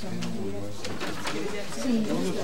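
Low murmured voices in a meeting room, with a few short rustles of paper being handled.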